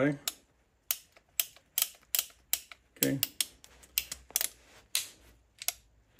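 Cimarron Uberti 1875 Remington revolver being checked clear by hand, its cylinder and lockwork giving a series of about fifteen sharp metallic clicks at an uneven pace.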